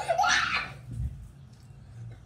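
A girl's short, high-pitched giggling squeal, muffled behind her hand, as the sour candy hits; it lasts about half a second and is followed by a soft low thump about a second in.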